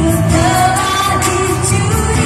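Live acoustic pop performance by a girl group: female voices singing into microphones over strummed acoustic guitars, amplified through stage speakers.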